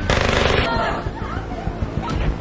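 A short burst of rapid gunfire lasting about two-thirds of a second, followed by voices.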